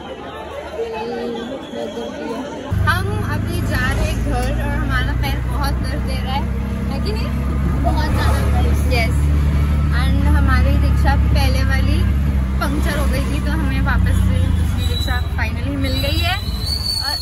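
Crowd chatter for the first few seconds, then about three seconds in a steady low rumble of a vehicle heard from inside its cabin, with voices talking over it.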